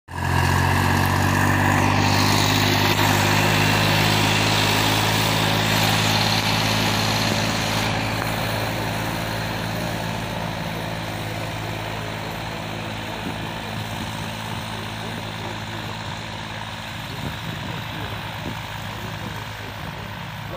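Farm tractor's diesel engine running steadily while pulling a harrow through tilled soil. It is loud and close at first and fades gradually from about eight seconds in as the tractor moves away.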